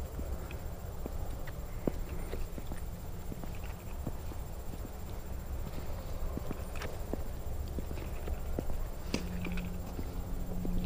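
Footsteps of a person walking outdoors over ground and grass: irregular soft crunches and ticks over a steady low rumble.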